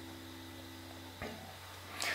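Faint tail of plucked guitar notes ringing out and fading, cut off with a small click about a second in, over a low steady hum.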